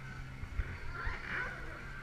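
Background ambience: a steady low hum with faint distant voices about a second in and a few soft knocks.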